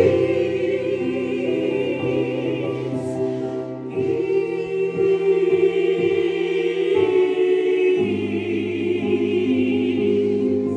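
Small gospel choir singing slow, held chords in close harmony, accompanied by a Yamaha Motif synthesizer keyboard holding chords and bass notes. The harmony changes about four seconds in and again about eight seconds in.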